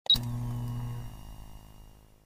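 Intro sound effect for a logo reveal: a sharp, bright hit, then a low sustained tone that fades out over about two seconds.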